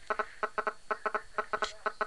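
Mobile phone's radio interference picked up by the recording as the phone receives an incoming text: a rapid, uneven run of short buzzing pulses, about five or six a second.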